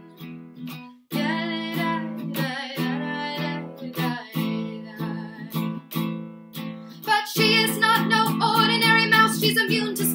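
Baritone ukulele strummed in chords as an instrumental break in a song. The playing drops almost to nothing about a second in, then resumes and grows louder from about seven seconds in.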